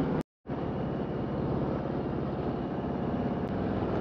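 Harley-Davidson Road King Special's V-twin engine running steadily as the motorcycle cruises along the road, with road and wind noise. The sound cuts out completely for a moment just after the start.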